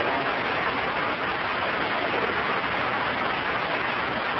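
Steady hiss, an even noise like rain, from the old recording itself, with no clear voice or events standing out.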